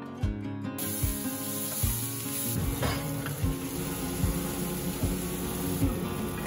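Diced onions sizzling in a hot cast-iron skillet as they are stirred with a silicone spatula; the sizzle comes in suddenly about a second in. Background music with a steady beat plays underneath.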